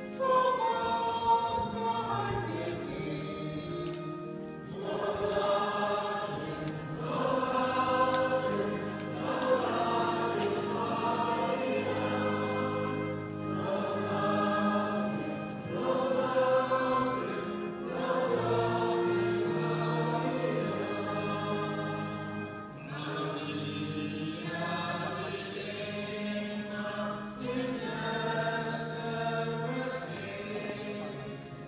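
Choir singing a slow hymn in long held phrases over a low sustained chord, with short breaks between phrases about every four to five seconds.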